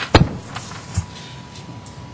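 Handling knocks picked up by a lectern microphone as papers are gathered at the podium: one sharp knock just after the start, a softer one about a second in, and low room noise between.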